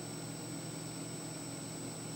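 Steady low hum with a constant thin high whine from the opened indoor unit of a Samsung heat pump boiler, unchanged throughout.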